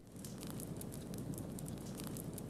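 Low surface fire burning through dry leaf litter on a forest floor: a steady rush with many small, sharp crackles.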